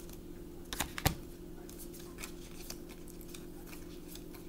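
Tarot cards being shuffled by hand: a run of soft clicks and flicks of the cards, two sharper clicks about a second in. A steady low hum runs underneath.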